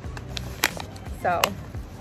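Crinkling and crackling of a kraft-paper herb pouch being handled and folded shut, with a few sharp crackles over about a second and a half.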